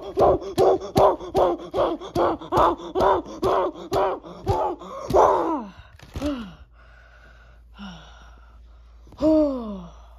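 A person's voice laughing in a long, even run of short bursts, about three a second, for some five seconds, followed by a few falling, groan-like voice sounds.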